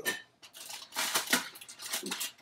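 Strip of peel being cut from a lemon with a bar knife or peeler: several short scraping strokes.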